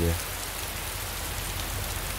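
Heavy rain falling, a steady even hiss, heard from inside a moving car on a flooded road, with a low steady hum underneath.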